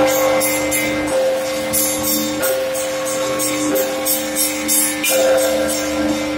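Church bells rung from the clapper ropes by one ringer in the belfry: quick strikes on the small bells, about three a second, over a deeper bell struck about every second and a half, all ringing on together.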